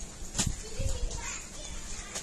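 Faint background voices, with a single sharp knock about half a second in.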